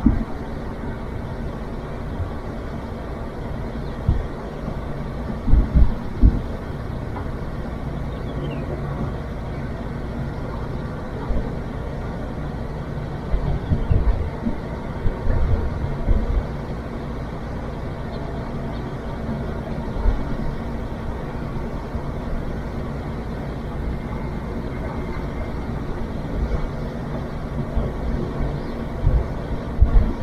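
Steady low mechanical hum with faint steady tones, broken now and then by brief low rumbles.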